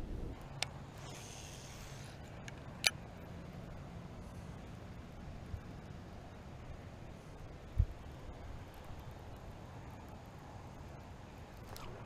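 Faint steady low rumble of outdoor background noise, broken by a few sharp isolated clicks and a short low thump about eight seconds in.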